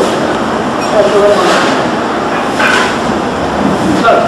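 Snatches of people's voices over a loud, steady rushing noise.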